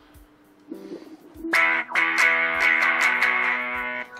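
Electric guitar played through the TASCAM DP-24/32's auto-wah effect: a few soft notes about a second in, then a chord strummed repeatedly from about a second and a half in, ringing on.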